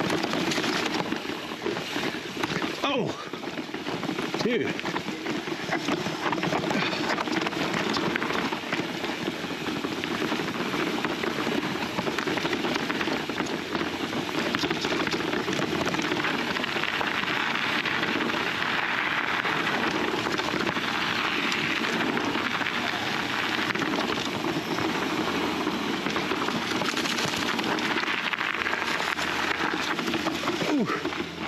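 Fezzari La Sal Peak mountain bike rolling down a rocky, leaf-covered trail: a steady crunching rush of tyres over stone, dirt and dry leaves.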